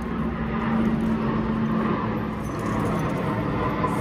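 Steady outdoor background noise with an even low hum during the first couple of seconds, of the kind a nearby running vehicle makes.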